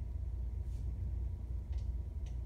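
Steady low rumble of classroom room noise, with a few faint short hisses about one and two seconds in.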